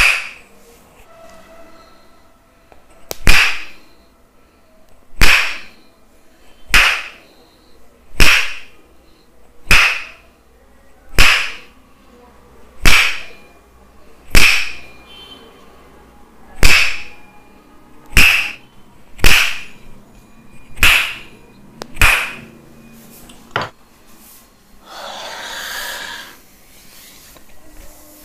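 Tok sen massage: a wooden mallet striking a wooden stick held against the neck and shoulder, sharp woody knocks with a short ring. There are about fifteen strikes, roughly one every second and a half.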